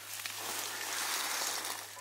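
Dry leaf litter rustling softly and evenly as a dead whitetail buck's head and antlers are shifted on the ground.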